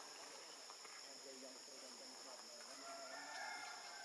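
Faint outdoor ambience: a steady high-pitched insect drone. Near the end comes a drawn-out call of about a second, holding several pitches at once.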